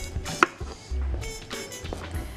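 A chef's knife cutting through broccoli on a cutting board, with one sharp knock of the blade about half a second in and softer thuds after, over background music.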